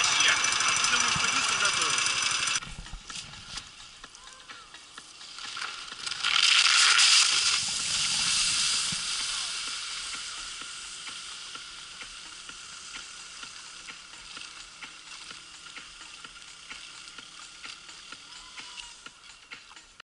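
Wakeboard skimming across river water: a hiss of spray that swells about six seconds in and fades slowly as the rider moves away. Before it, voices cut off abruptly a couple of seconds in.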